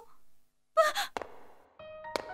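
A cartoon character's short startled gasp about a second in, followed by a sharp click and a brief hiss, with music starting near the end.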